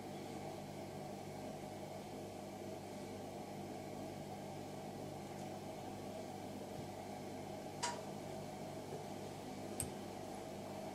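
Steady low hum of room background noise, with two faint short clicks, one about eight seconds in and one near the end.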